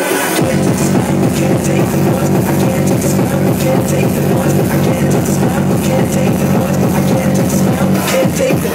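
Hardcore techno played loud over a club sound system: a fast, steady kick-drum beat with dense synths on top, the kick coming back in just after the start.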